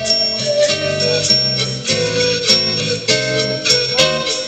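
Live acoustic band music without singing: a guitar, a sustained melody line and a bass line, with sharp jingling percussion hits scattered through the passage.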